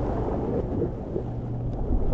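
Low rumble of churning water heard underwater, with a faint steady hum coming in about halfway through.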